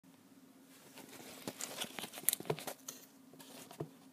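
Handling noise from a phone being picked up and set in position: faint rubbing, rustling and a run of small clicks and knocks, the last one just before the end, over a low steady hum.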